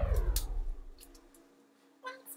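The tail of a loud sound that falls steadily in pitch, fading out within the first second, with a sharp click about a third of a second in.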